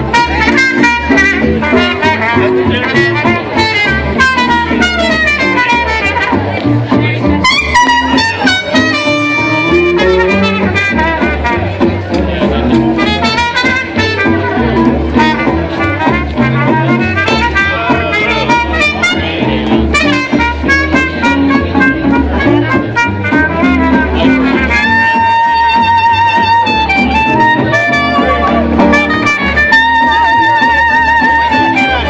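Live traditional jazz band playing a swinging instrumental passage, horns carrying the melody over a steady beat, with a long held, wavering note near the end.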